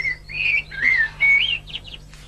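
A bird singing a short run of clear whistled notes, each gliding up or down, with a few quick higher chirps near the end.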